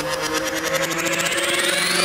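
Intro transition sound effect: a synthetic riser sweeping steadily upward in pitch with a fast, even flutter, building to a peak.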